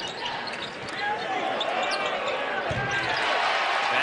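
Live college basketball game sound in an arena: steady crowd noise with sneakers squeaking on the hardwood court and a ball thudding about two-thirds of the way through. The crowd grows a little louder about a second in.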